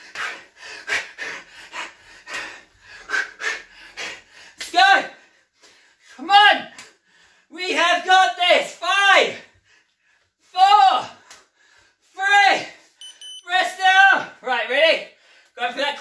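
A man breathing hard while shadowboxing: quick, sharp exhalations in a fast run, then from about five seconds in a string of short voiced grunts, each falling in pitch, roughly one a second.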